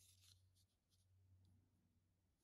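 Near silence: a faint rustle of jersey fabric being handled in the first half-second, over a low steady hum.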